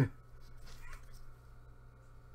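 Quiet steady low hum in a small room, with a brief faint sound a little under a second in.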